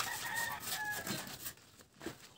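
A rooster crowing once, a call of about a second that drops in pitch at its end.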